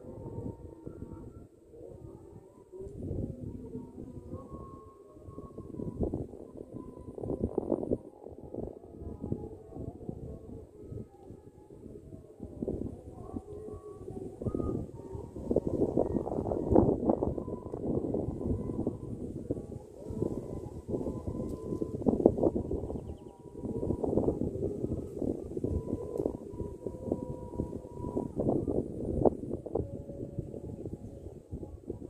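Wind buffeting the microphone outdoors: a low rumble that rises and falls in gusts, strongest about halfway through and again a few seconds later, with faint steady tones in the background.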